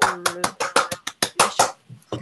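One person clapping hands quickly, about eight claps a second, heard through a video call, stopping just before the chair speaks again.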